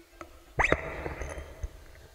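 Microphone on a stand being handled and adjusted, heard through the sound system: a loud knock about half a second in with a short rising squeal, dying away over the next second.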